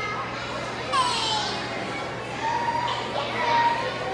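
Children chattering and calling out in a school cafeteria, with a loud high-pitched shout about a second in and another raised voice near the end.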